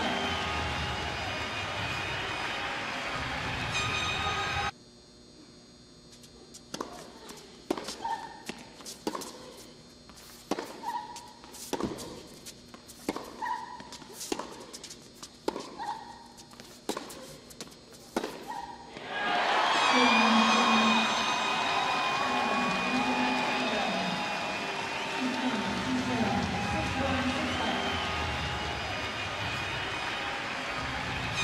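Crowd cheering and clapping in an indoor arena. It cuts off suddenly to a tennis rally: rackets striking the ball and the ball bouncing on the hard court, sharp knocks about twice a second for some fourteen seconds. The crowd then breaks into loud cheering again as the point ends.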